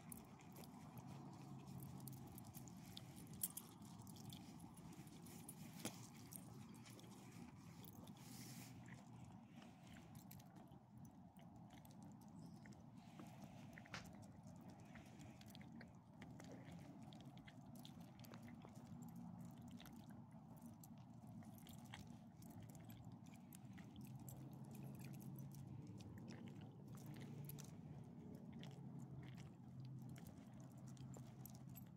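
Near silence with faint scattered crunches and clicks from two small leashed dogs nosing about on gravel, over a faint low steady hum.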